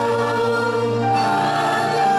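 Gospel worship song: a man singing long held notes into a microphone, with other voices joining in. The notes shift to a new pitch about a second in.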